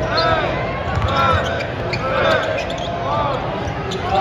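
A basketball being dribbled on a hardwood court, with about four short sneaker squeaks from players cutting, over a constant murmur of crowd voices in the arena.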